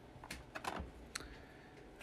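A few faint, light clicks of hard plastic PSA grading slabs being handled and turned over in the hand, the cases tapping against fingers and against each other.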